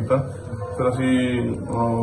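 A man's voice speaking, with a long vowel held at one steady pitch about a second in.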